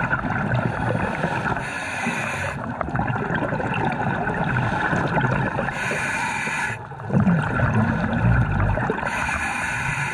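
Scuba diver breathing on a regulator, heard underwater: a hissing inhale about every three to four seconds, each followed by a long spell of bubbling exhaled air.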